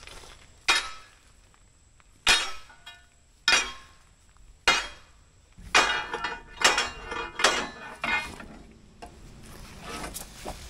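Long steel pry bar clanking against rusted steel as it works a frame loose from a scrap pile. Four single sharp metal clanks, each with a short ring and about a second apart, are followed by a quicker run of clanks.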